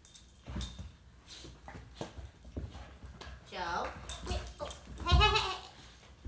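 A dog whining and crying in excitement, with two drawn-out, wavering cries in the second half, the later one the loudest. Light clicks and taps come between them.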